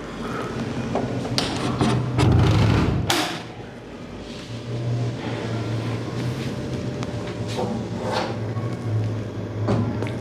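A door being opened and handled: a series of knocks and rattles, the sharpest about three seconds in, over a low on-and-off hum.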